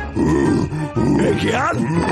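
A voice performer making a cartoon bear's noises, non-word vocal sounds, over background music.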